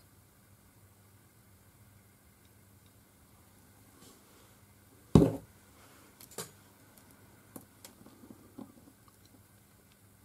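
Quiet handling at a craft desk: one sharp knock about halfway through, then a few light taps and clicks as small paper pieces are pressed onto a card.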